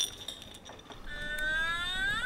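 A short click at the start, then from about a second in a whistle-like tone that glides upward in pitch over about a second and a half.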